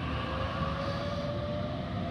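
Sydney Trains Waratah double-deck electric train pulling away from the platform. Its traction motors give a steady whine in two tones over the rumble of the wheels on the rails.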